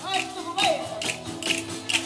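Southern Italian folk ensemble playing a tammurriata: a tammorra frame drum with jingles struck in a steady beat about twice a second, over mandolin and acoustic guitar, with a voice singing briefly.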